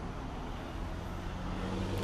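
A low, steady rumble of road traffic that grows a little louder near the end.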